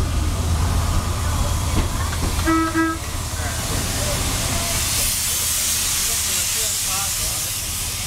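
Heritage rail motor running along the track with a steady low rumble; about two and a half seconds in, a brief double toot of a whistle sounds. From about halfway, steam hissing from the standing steam locomotive 2705 grows loud as the rail motor passes alongside it.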